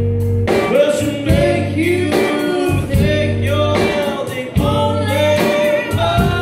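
Live rock band playing with a woman singing lead over bass, guitars and drums.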